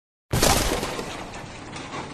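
Glass-shattering sound effect: a sudden crash about a third of a second in, then a spray of small clicking fragments that fades away.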